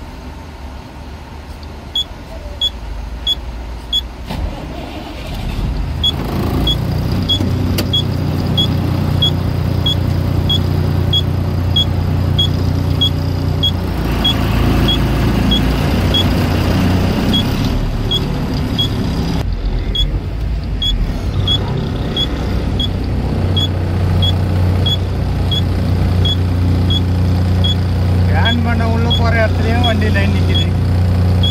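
A container lorry's diesel engine starts about five seconds in and then runs steadily, louder for a few seconds around the middle as the truck moves off. A turn indicator ticks evenly throughout, about one and a half ticks a second.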